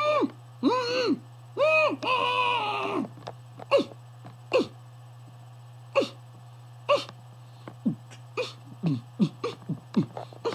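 Beatboxer making nasal beatbox sounds with his hand clamped over his mouth, the air pushed out through the nose. First come a few short pitched hums like a muffled scream, then a string of short, sharp nasal bursts about once a second that come quicker near the end.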